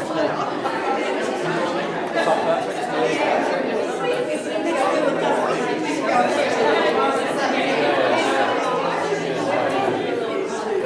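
A congregation chatting all at once, many overlapping voices of men and women exchanging greetings, with no single voice standing out.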